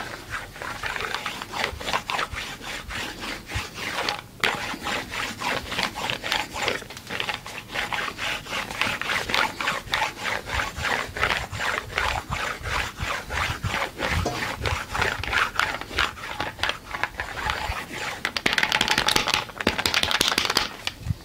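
Corded handheld massager worked over the back, its head rubbing against skin and fabric in quick, rhythmic rasping strokes.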